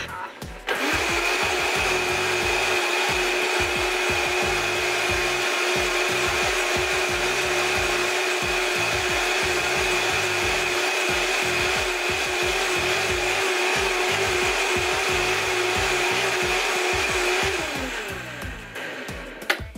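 Vitamix 5200 blender running at top speed with warm soapy water in the jar to clean it, a steady high whine with a churning wash. It starts about a second in and spins down with a falling pitch near the end.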